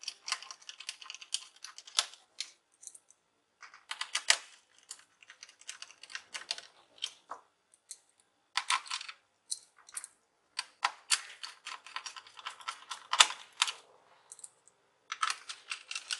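Light, irregular clicking and tapping of small screws and a screwdriver against the laptop's plastic bottom case, in quick clusters with a few short pauses.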